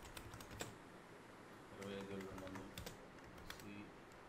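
Computer keyboard typing: quick key clicks in a short burst at the start, then a longer run from just before two seconds in to past three and a half seconds, all fairly faint. A faint voice murmurs during the second run.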